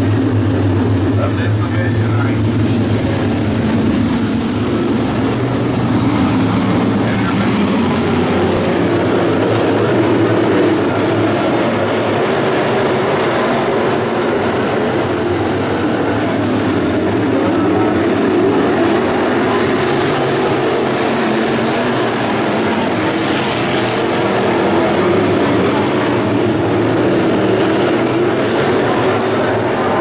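A pack of dirt late model race cars with GM 602 crate small-block V8 engines running laps around a dirt oval, a loud, continuous engine roar that rises and falls as the cars pass by.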